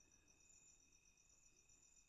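Near silence, with a faint, steady, high-pitched insect trill pulsing evenly in the background.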